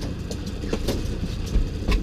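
Outboard motor on a fishing boat running steadily in gear, with a few sharp knocks of gear or footsteps on the hull.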